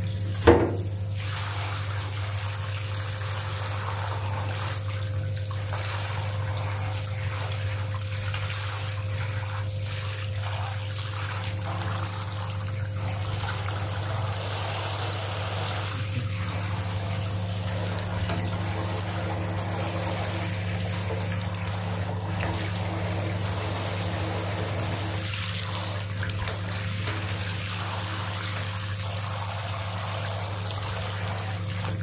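Hand-held shower running steadily, its water spraying into a bathtub, over a steady low hum. A single sharp knock about half a second in.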